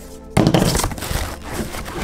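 A thump and plastic crinkling as a heavy plastic-wrapped bag is pulled out of a cardboard box, starting about a third of a second in, over background music.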